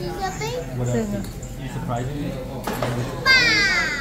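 A young child's voice and playful chatter with other voices behind; near the end, a loud high-pitched squeal that slides down in pitch.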